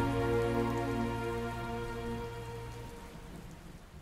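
A song's final held chord fading away over the sound of rain. The chord dies out by about three seconds in, and the rain fades on.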